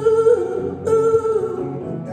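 Live acoustic guitar with voices singing two long held notes without clear words, the second beginning about a second in.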